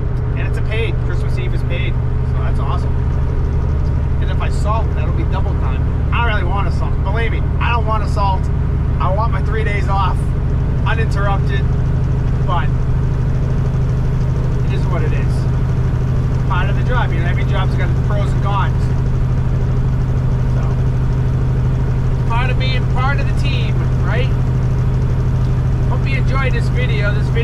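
A heavy truck's diesel engine droning steadily at cruising speed, heard from inside the cab.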